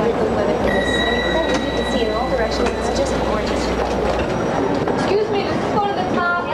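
Many voices chattering in a busy elevator lobby over a low hum. A steady high tone sounds about a second in and lasts just over a second, and the hum stops about four seconds in.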